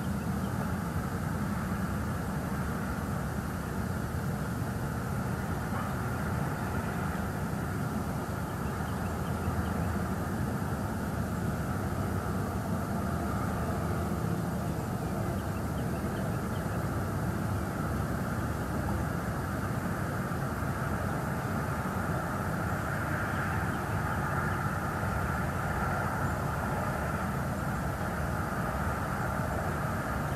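Steady low outdoor rumble with a constant hiss above it, unbroken, with no distinct calls or knocks standing out.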